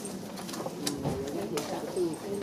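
Indistinct murmur of several overlapping voices in a hall, with a few sharp clicks.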